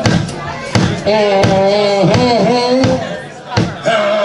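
Live band playing a slow blues number. A held, wavering melody line sounds over sparse drum hits.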